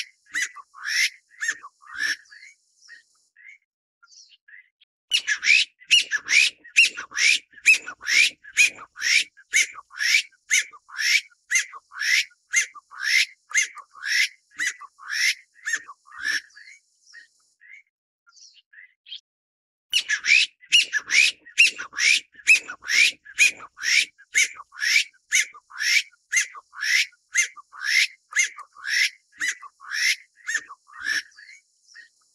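Taiwan bamboo partridge calling: a loud run of short, rising notes, about three a second, given in long bouts with pauses of a few seconds between them.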